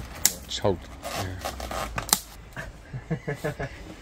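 Someone clambering out through a window frame: two sharp knocks and some scraping against the frame and brickwork, with short bursts of a man's voice in between.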